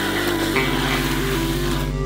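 Music soundtrack: held notes that step from one pitch to the next over a steady bass line.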